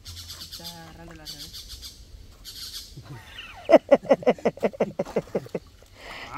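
A bird calling loudly in a fast series of short, harsh notes, about seven a second, for some two seconds in the second half. Before it, a high rasping buzz comes in two short spells.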